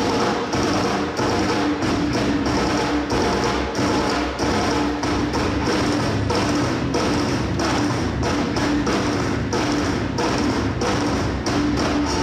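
Rock drum kit played in a fast, dense solo: a continuous stream of rapid strokes on drums and cymbals.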